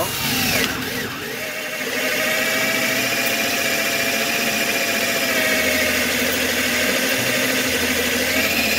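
Makita 12V cordless drill boring an 8 mm bit into very hard solid wood, its motor running under load with a steady whine that grows louder about two seconds in.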